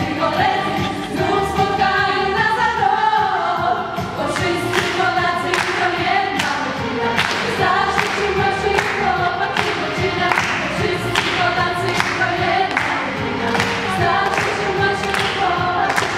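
A girls' choir singing a cappella, several voices together. From about four seconds in the singers clap a steady beat, about two claps a second, in time with the song.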